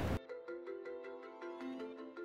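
Quiet background music: a slow melody of single pitched notes, each starting sharply and ringing on, stepping between pitches.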